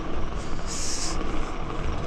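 BMX bike tyres rolling over stone paving, a steady rumble with wind noise on the microphone. About three-quarters of a second in, a short sharp hiss lasts roughly half a second.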